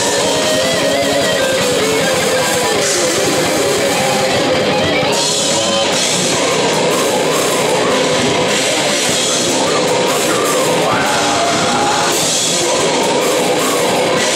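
A death metal band playing live: distorted electric guitars and a drum kit, loud and unbroken.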